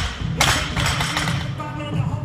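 A loaded barbell with bumper plates dropped onto the gym floor after front squats: a heavy thud about half a second in, with a noisy tail lasting about a second.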